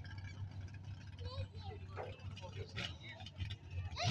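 A steady low rumble of engines idling, with faint distant voices scattered over it.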